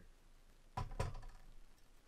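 Two quick knocks, about a quarter second apart, with a brief ring, from a glass beer bottle being handled and set down.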